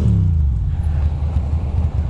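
2006 Ducati Monster 620's air-cooled L-twin engine, its note falling as the revs drop in the first half-second, then running low and steady at slow riding speed.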